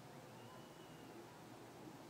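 Near silence: faint room hiss.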